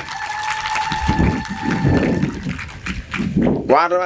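A man speaking Somali through a handheld microphone and public-address system. For about the first two seconds a steady high ring sounds over the voice, typical of PA feedback.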